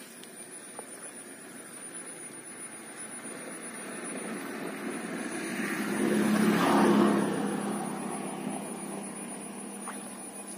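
A distant engine drone that swells slowly to a peak about seven seconds in and then fades: something motorized passing by.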